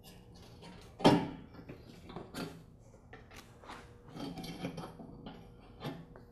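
Steel extension spring on a lawn tractor mower deck being pulled off its bracket with a rope, letting go with one sharp metallic clank about a second in, followed by quieter clicks and rattles.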